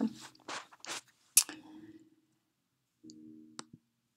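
Short fragments of a woman's voice close to a laptop's microphone, then one sharp click from the laptop about one and a half seconds in as the recording is stopped. A brief hummed 'mm' follows, and a faint click near the end.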